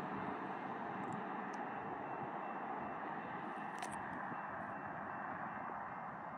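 Steady outdoor background hiss with a faint high steady tone and one brief click about four seconds in.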